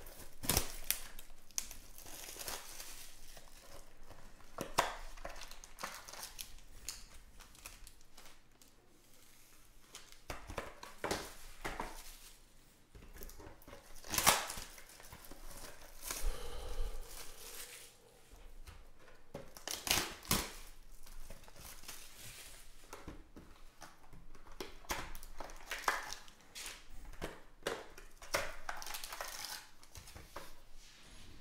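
Plastic wrap on a Panini Obsidian Football trading-card box being torn and crinkled off, then the cardboard box being opened. Irregular crackling rustles and rips, with a few sharper snaps, the loudest about halfway through and again about two-thirds in.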